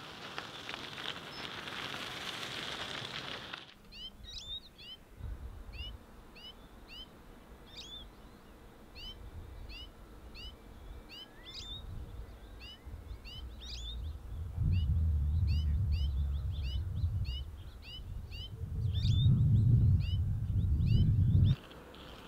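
A bird calling over and over, short sweeping chirps about one or two a second, over gusts of wind rumbling on the microphone that are loudest in the last few seconds. For the first few seconds a steady hiss is heard instead, which cuts off suddenly.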